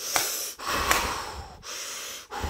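A person breathing close to the microphone: three long, noisy breaths with short gaps between them, and a couple of small clicks.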